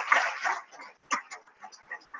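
An audience's applause tapering off in the first half second, followed by scattered short sounds of the crowd, with brief voices and laughs.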